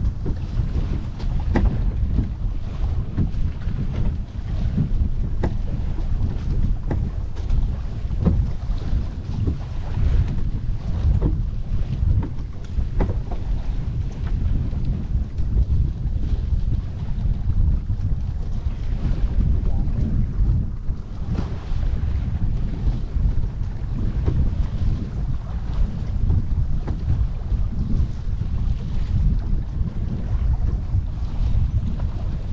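Wind buffeting the microphone in a steady low rumble, over water rushing and splashing along the hull of a sailboat under way, with short slaps of water every few seconds.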